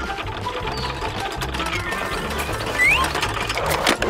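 Cartoon flying-saucer engine sound effect: a steady, rapid mechanical whirring over background music. A short rising chirp comes about three seconds in, and a rising whine starts near the end as the saucer takes off.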